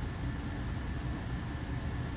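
Steady low background rumble and hiss with no distinct clicks or knocks: the constant room noise that runs under the talk.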